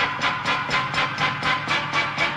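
Radio station ID jingle music opening with a quick, even beat of about four hits a second.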